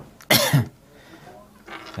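A single short cough right at a lapel microphone held to the mouth.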